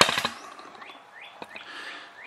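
Thin plastic dust-collector bag rustling and crackling as it is handled, with a sharp crackle at the very start. A few faint short chirping sounds follow. The collector's motor is not running.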